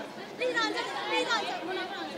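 Only speech: several voices talking over one another at a lower level than the main speaker.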